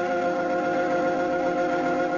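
Organ music playing long, sustained chords that change slowly.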